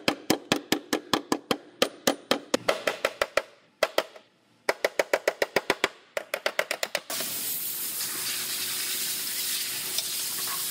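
Hammer blows on the crushed inner wheelhouse sheet metal of a car's quarter panel, about four a second, knocking the rolled-in metal back into shape; a short break near four seconds in, then another quick run of blows. About seven seconds in the hammering stops abruptly and a steady hiss takes over.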